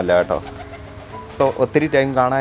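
Domestic white pigeons cooing, with a man's voice and background music.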